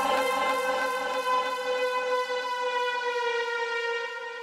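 Dubstep track in a breakdown with the bass and drums gone, leaving a sustained, siren-like synthesizer tone rich in overtones that slowly sinks in pitch, over a quick pulsing texture.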